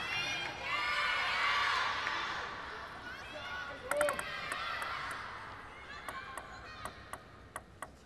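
Arena crowd cheering and shouting after a point, dying away over the first three seconds. Then a table tennis ball is bounced on the table several times by the server, a string of short, sharp clicks a quarter to half a second apart.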